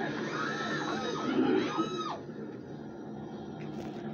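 A young child's high-pitched squealing, a few short rising-and-falling cries in the first two seconds, then quieter room sound with a steady low hum.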